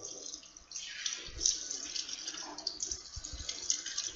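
Water running from an electric instant-heating faucet into a sink, splashing over a hand held under the stream.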